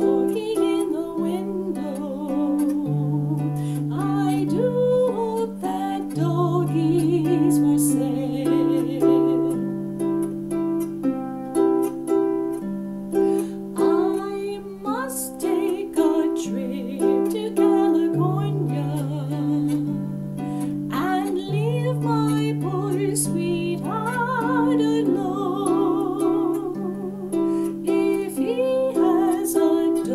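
Lever harp played with both hands, plucked melody notes over ringing bass notes, with a woman singing a song over it in held, wavering notes.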